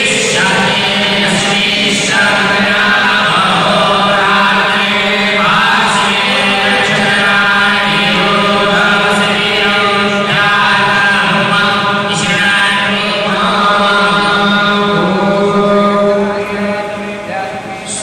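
A group of Hindu priests chanting mantras together in a steady, sustained recitation during a puja, easing off briefly near the end.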